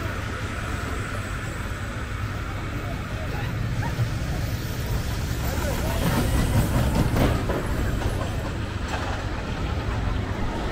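Small family roller coaster train rolling along its steel track and passing close by, its rumble and wheel rattle growing louder and peaking about six to seven seconds in, then fading. Voices carry in the background.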